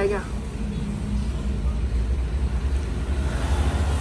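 Light truck's engine running, a low rumble that swells about a second in and holds steady.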